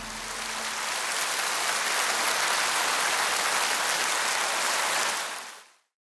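Audience applauding in a concert hall, a steady wash of clapping as the last of the music dies away at the start; it fades out near the end.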